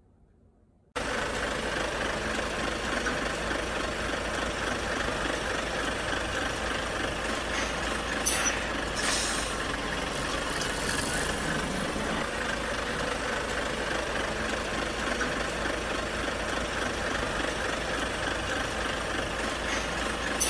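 Heavy truck engine idling steadily, starting abruptly about a second in, with a few brief air hisses near the middle.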